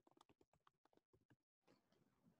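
Near silence: a faint, rapid run of small clicks, cut by a brief total dropout about one and a half seconds in, then faint hiss.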